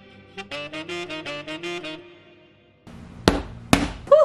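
Background instrumental music, a melody of short separate notes, that stops abruptly near three seconds in. Two loud thumps about half a second apart follow.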